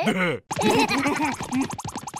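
Cartoon voices of the two larva characters laughing and chattering in wordless gibberish: a short cry at the start, then a brief break, then a fast run of pitch arcs that rise and fall again and again.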